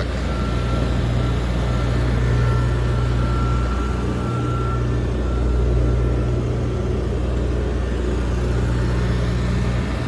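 Diesel telescopic boom lift's engine running steadily, a low constant drone.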